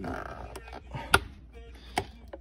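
Plastic air-intake duct being worked loose from the airbox: a short rubbing scrape, then a sharp plastic click a little over a second in and another at the end.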